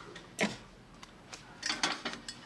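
A cooking pot is handled on the stovetop: one sharp knock about half a second in, then a few lighter clinks near the end.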